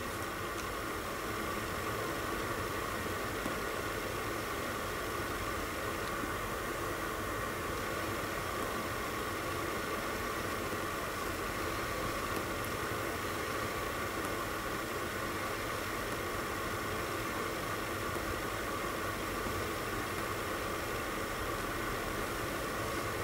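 A steady, even hiss of background room noise with a faint steady hum in it, unchanging throughout, with no distinct knocks or puffs standing out.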